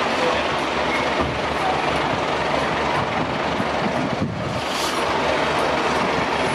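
Steady rumbling of fire engines standing with their engines running, with a brief hiss about five seconds in.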